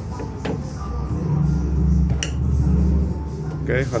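A few light clicks and clinks from wiring and plastic parts being handled and pressed into place inside a car door's inner panel, the sharpest just past the middle. Under them is a low steady hum that swells for about two seconds in the middle.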